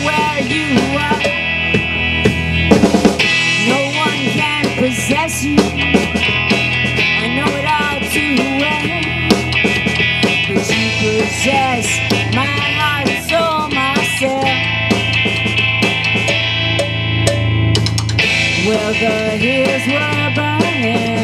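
A live rock band of electric guitar and drum kit playing a song, loud and steady.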